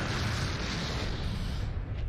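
Explosion sound effect from an anime soundtrack: a steady rumble of noise as a giant thundercloud bursts, its hiss thinning near the end.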